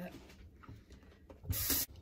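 Faint rustling of hands pressing potting soil into a pot. Near the end comes a short burst of the kitchen faucet running into a stainless steel sink, lasting about a third of a second and cut off suddenly.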